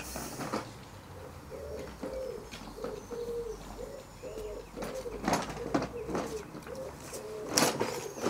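A pigeon cooing, a long run of short, low hoots repeated one after another. A few sharp knocks come in about five seconds in and again near the end.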